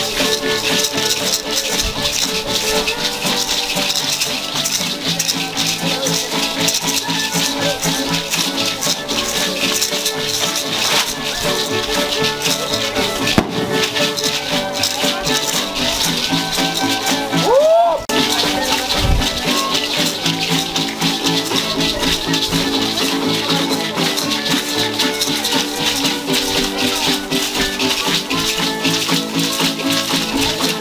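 Ritual dance music with many hand rattles shaking steadily in rhythm, typical of a troupe of festival danzantes. About two-thirds of the way through, a brief whistle rises and falls over it.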